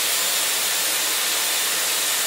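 Dyson Airwrap's curling barrel blowing air steadily, an even hiss with a faint high whine, as it heats a strand of hair wrapped around it: the heat stage of a 15-second heat then 10-second cool curl.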